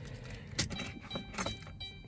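Car keys jingling with a few light clicks as the ignition key of a 2018 Dodge Grand Caravan is turned to shut the engine off.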